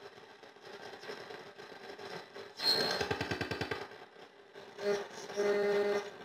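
Grundig 4017 Stereo valve radio being tuned across the band. It gives hiss and faint static, a buzzing burst of a station with a short whistle about two and a half seconds in, and a steady held tone near the end.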